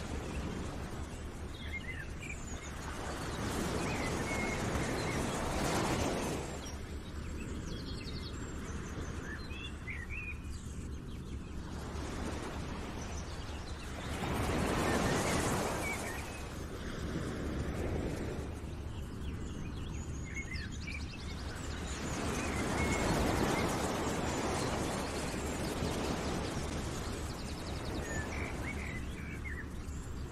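Outdoor nature ambience: a wash of noise that swells and fades every several seconds, with short bird chirps scattered throughout.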